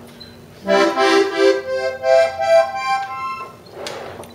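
Hohner diatonic button accordion in G played on the push, with the bellows drawn in: a quick rising run of single notes up the middle row, F sharp and then G, C and E repeated, which outlines a C major triad. A short click comes near the end.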